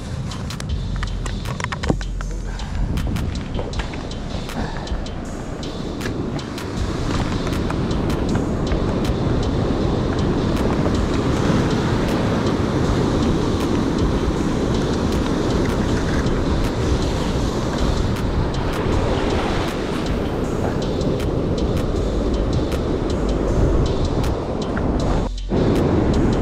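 Surf breaking and washing over rocks, a steady rush that grows louder from about six seconds in, with wind rumbling on the microphone.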